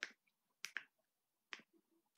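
Four faint, short, sharp clicks or snaps: one at the start, two close together about two-thirds of a second in, and one about a second and a half in.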